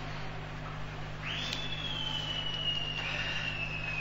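A thin, high whistling tone starts about a second in and slowly sinks in pitch for nearly three seconds. Under it runs a low, steady electrical hum.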